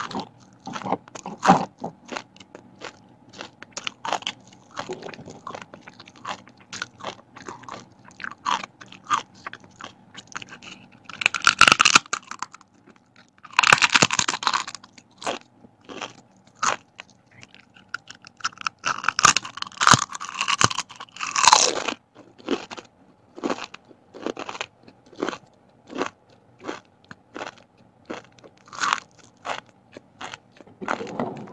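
Thin, crisp vegetable crackers being bitten and chewed close to the microphone: a steady run of short crunches about twice a second, with a few louder, denser stretches of crunching in the middle as fresh bites are taken.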